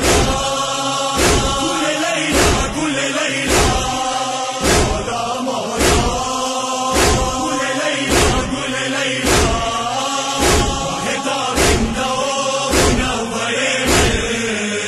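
A men's chorus chanting a noha lament together, over a sharp, even beat about once a second from hands striking chests (matam).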